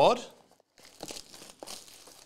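Faint, irregular crinkling and tearing of the plastic shrink-wrap being pulled off a trading card box. It starts about a second in, after a spoken word trails off.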